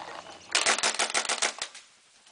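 CCM S6 pump paintball marker fired in a fast auto-trigger string, the trigger held while pumping: a rapid run of sharp pops and pump clacks starting about half a second in and lasting about a second.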